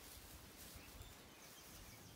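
Near silence: faint outdoor field ambience.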